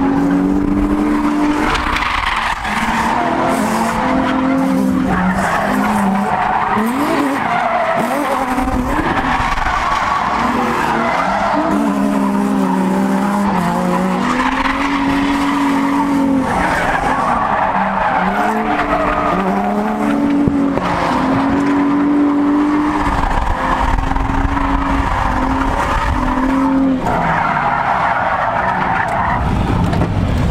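Nissan 350Z drifting, heard from inside the cabin: the engine is held at high revs that keep rising and dropping while the tyres squeal and skid without let-up, smoking the tyres.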